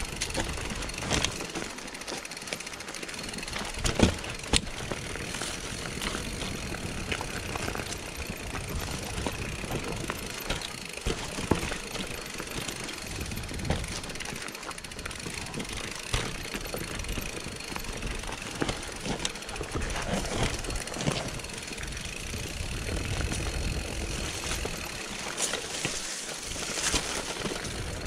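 Mountain bike ridden down a rough, technical dirt singletrack: a continuous rumble and rattle of tyres, chain and frame over the trail, broken by sharp knocks as the wheels hit roots and rocks, the loudest about four seconds in.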